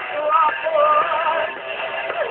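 Live heavy metal band playing, with a female lead singer holding long, wavering notes over the band. The recording sounds dull and lo-fi, with no top end.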